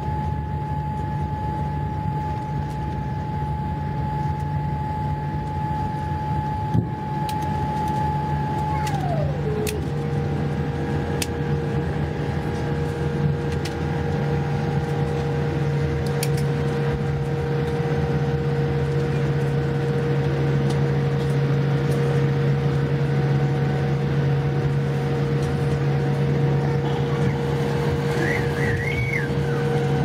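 Cabin noise of a Boeing 787 slowing on the runway after touchdown, spoilers raised: a steady low rumble of engines and airflow under a high whine that drops to a lower pitch about nine seconds in and holds there. A few faint clicks and rattles come through.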